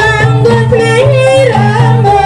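Kuda lumping (jaranan) accompaniment music: a high, ornamented sung melody that bends and slides between notes, over a repeating low bass pattern.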